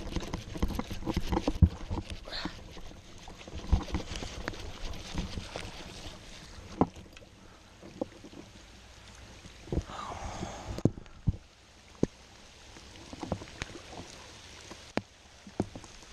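Rain falling steadily on pond water, with scattered sharp knocks and clicks from a baitcasting rod and reel being handled close by, and water splashing as a small fish is lifted out.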